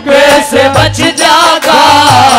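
A woman singing a Haryanvi ragni into a microphone in a high, drawn-out melodic line over live accompaniment with a low drum beat.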